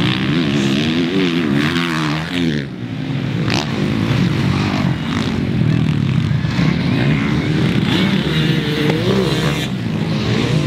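Several motocross bikes racing on a dirt track, their engines overlapping and revving up and down as the riders throttle and shift gears.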